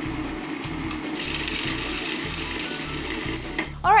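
Food processor motor running steadily, its blade chopping basil leaves, pine nuts and garlic into a paste; it cuts off just before the end.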